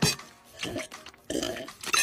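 A rough, throaty groan over background music with a regular beat.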